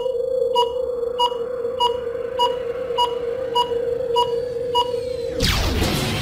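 Electronic logo-ident sound effect: a steady low hum with a short high beep about every 0.6 s, nine beeps in all. It ends in a loud whoosh shortly before the end.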